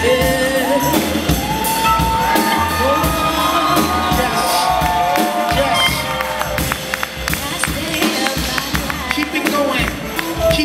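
Live band playing a hip-hop and jazz groove with drums and bass, over a sung melody of long held notes. In the second half, sharp quick ticks of tambourine or hi-hat come to the front.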